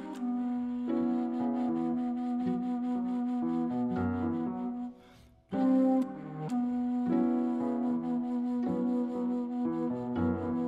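Bass flute playing a slow jazz melody with long held notes, accompanied by strings and piano. The music drops out briefly a little past halfway, then resumes.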